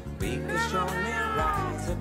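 Soft pop ballad music, with a high-pitched voice over it that slides and falls in pitch for about a second.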